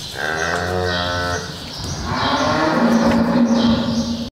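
A cow mooing: two long calls, the second slightly higher and louder.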